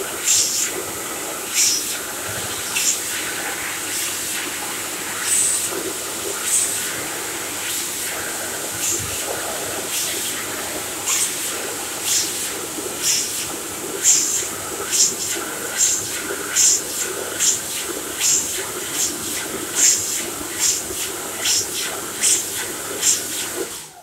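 Dyson Airblade AB03 hand dryer running with a hand held in its slot: a loud, steady rush of air over a high whine, broken by irregular short sharper bursts of hiss. It cuts off near the end and starts winding down.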